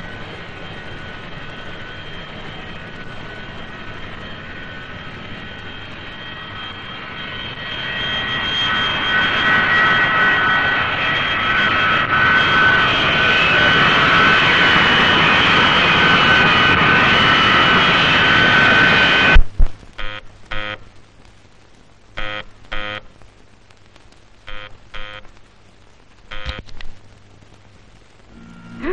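Jet airliner engines running on the ground: a steady high whine over rushing noise that grows louder about a third of the way in, then cuts off abruptly about two-thirds through. A few short, quieter sounds follow.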